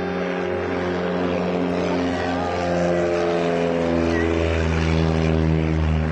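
Single-engine propeller light aircraft at full takeoff power climbing away, a steady engine drone that grows louder over the first few seconds and sinks slightly in pitch later as it passes.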